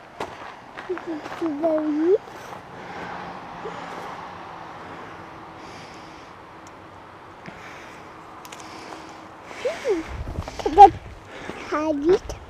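A few short vocal sounds from a toddler, then a soft steady rustle of handling and brushing through twigs and leaves. Near the end come several sharp clicks, a low rumble and more brief vocal sounds.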